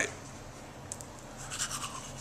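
Faint scratching and rubbing noises over a low steady hum, with a single click about a second in and a flurry of scratchy rustling near the end.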